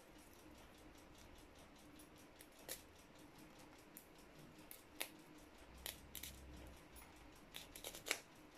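Fresh rosemary leaves being stripped by hand from their woody sprigs: faint, scattered small clicks and rustles, with a few more coming together near the end, over near-silent room tone.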